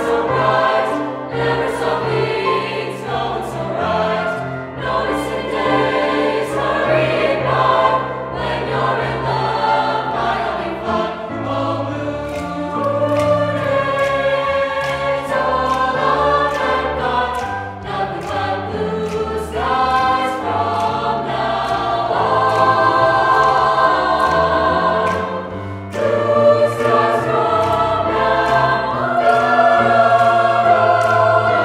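Mixed high school choir of female and male voices singing a song in harmony, with sharp clicks recurring through it.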